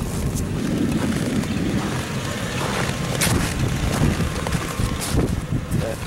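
Wind buffeting the microphone in a steady low rumble, with a few brief crunches of footsteps in snow.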